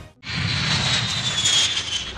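Jet aircraft sound: a rush of engine noise with a high whine that slowly falls in pitch, like a plane passing, starting a fraction of a second in after a brief silence.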